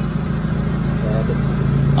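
Steady low hum of an engine running at idle.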